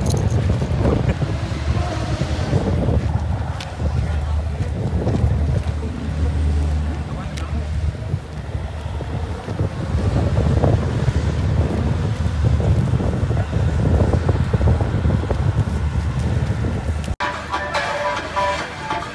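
Wind buffeting a handheld phone microphone outdoors, a heavy, uneven rumble, with voices in the background. Near the end it cuts abruptly and music begins.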